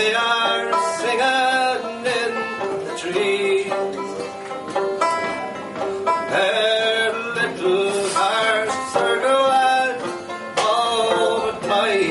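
A man singing an Irish folk ballad live, accompanied by a banjo, a bouzouki and a concertina.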